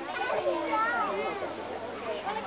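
Overlapping voices of onlooking children and adults talking and calling out.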